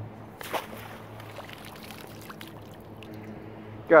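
Water splashing once about half a second in, then dripping and trickling, as minnows are scooped out of shallow pond water. A steady low hum runs underneath.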